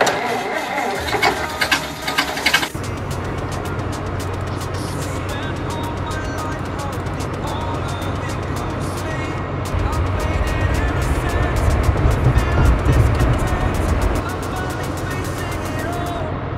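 Voices for the first few seconds, then a school bus engine running with a steady low rumble. The rumble grows louder about ten seconds in and eases near the end, all over background music.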